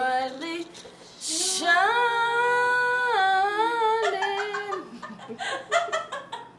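A woman singing unaccompanied: a short phrase, then one long held note that shifts pitch once, followed by laughter.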